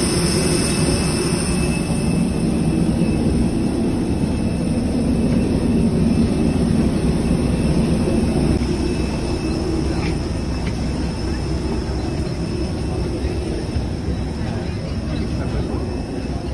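Steady rumble with a high, even whine from a parked jet airliner's running engines or power unit, heard close by on the apron. It eases a little in the second half as the microphone moves in through the aircraft door.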